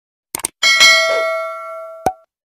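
Subscribe-animation sound effect: two quick clicks, then a bright bell ding that rings and fades over about a second and a half.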